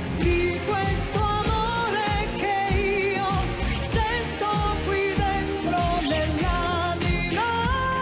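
A woman singing an Italian pop song live into a microphone, over band backing with a steady beat. Near the end she rises to a long held note.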